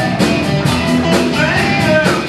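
A live rock band playing: electric guitars, bass and drum kit keeping a steady beat, with a lead line that bends up and down in pitch over the top.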